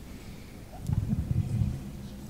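A pause filled with low room noise. About a second in come a few low, muffled thuds and a rumble.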